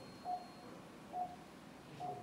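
Operating-room patient monitor beeping: two short single-pitched beeps just under a second apart, part of a steady pulse tone.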